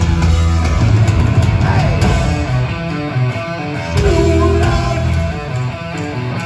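Heavy metal band playing live: loud distorted electric guitar over bass and drums, recorded from within the crowd.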